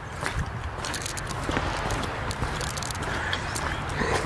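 Footsteps crunching on wet gravel as someone walks, irregular short crunches over a steady low rumble.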